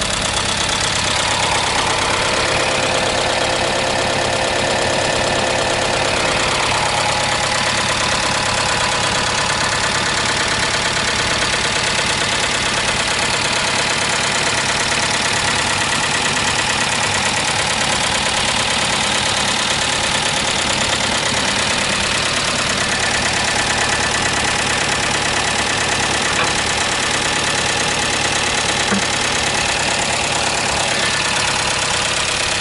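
Nissan Figaro's 1.0-litre turbocharged four-cylinder engine idling steadily, heard close up over the open engine bay.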